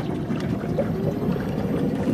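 Water splashing and gurgling along the hull of a boat moving at low speed under quiet electric drive, a steady noisy wash.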